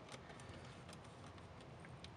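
Near silence: room tone with a few faint small clicks from handling on the workbench.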